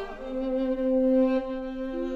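Classical chamber music in an art song: the singer stops and an instrument holds one long, steady note, loudest about a second in, with a new note entering near the end.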